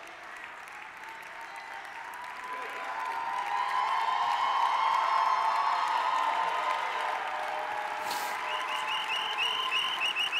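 Audience applause that swells over the first few seconds, is loudest midway and then holds. Near the end a high chirp starts repeating about twice a second.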